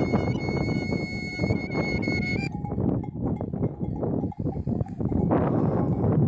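Shepherd's kaval, a long wooden end-blown flute, holds one long high note over a steady rush of noise and stops about two and a half seconds in. Irregular clicks and knocks follow over the continuing noise.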